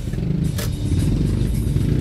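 Vehicle engine and road noise: a steady low rumble while on the move, with a brief click about half a second in.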